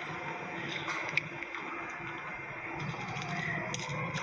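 Soundtrack of an online video clip of a giant elephant shrew playing through the computer: a steady, noisy background with a couple of faint clicks.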